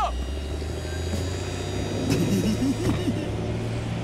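Animated dumper truck's engine sound effect, a steady low running hum as it drives off, with a short laugh about two and a half seconds in.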